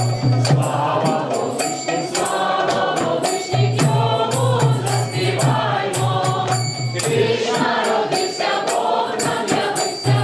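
A small group of women's voices and one man's voice singing a carol together, with a hand tambourine jingling in rhythm throughout.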